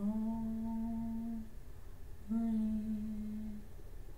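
A woman humming a slow tune in two long held notes, each over a second, with a short gap between them.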